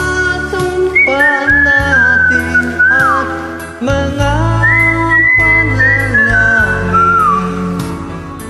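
A whistled melody carried over the song's karaoke backing music during the instrumental break, the high whistle line holding notes and sliding down between phrases.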